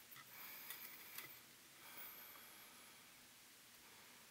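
Near silence: a few faint small ticks and rustles in the first second and a half from hands working a wire and soldering iron at a tube-socket terminal, then only room tone.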